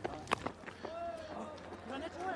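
A single sharp crack of a cricket bat striking the ball about a third of a second in, over a faint hum of distant voices around the ground.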